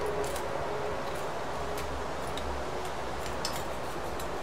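Faint, scattered light clicks of small hand tools being handled and sorted through, over a low steady hum.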